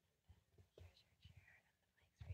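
Near silence, with faint off-mic voices murmuring.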